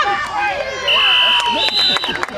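Spectators shouting and cheering. About a second in, a referee's whistle gives a long, steady, shrill blast, with a second, higher whistle joining near the end, blowing the play dead after a tackle.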